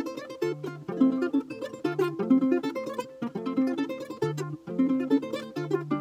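Acoustic guitar played fingerstyle by a beginner. Low bass notes come back every second or so under a steady run of picked higher notes.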